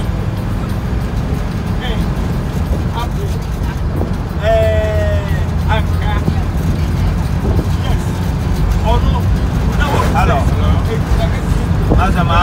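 Steady low rumble of a car's engine and tyres on the road while it drives, heard from inside the vehicle, with people talking over it. A short, slightly falling tone sounds about four and a half seconds in.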